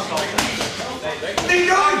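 Boxing gloves landing punches: two quick, sharp smacks near the start and a third about a second later.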